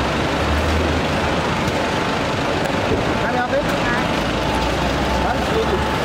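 Busy roadside ambience: a steady wash of traffic and crowd noise with a low rumble from vehicles, and scattered voices calling out, mostly in the second half.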